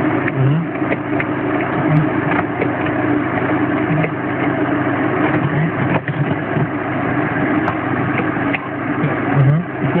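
Mercedes G-Class Wolf's engine running steadily while driving over a rough dirt track, heard from inside the cabin, with frequent short knocks and rattles from the body over the bumps.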